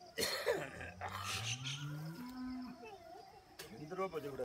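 A cow mooing once: a low call about two seconds long that rises in pitch and ends abruptly, just after a short noisy burst.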